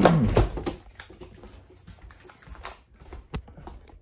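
A man's brief throat-clearing sound at the start, falling in pitch, then faint knocks and clicks from a phone on its stand being carried and handled, with one sharp click near the end.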